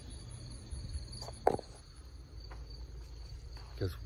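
Insects trilling steadily in a high, finely pulsing drone, with one short sharp knock about one and a half seconds in.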